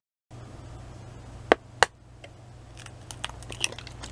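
An egg tapped twice sharply on the rim of a bowl to crack it, followed by a few faint clicks.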